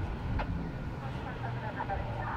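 Urban outdoor background: a steady low rumble of distant traffic with faint, indistinct voices.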